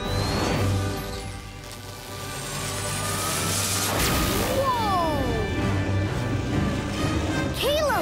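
Cartoon energy-pulse sound effects over background music: a rising whoosh builds to a bright burst about four seconds in, followed by falling electric zapping glides.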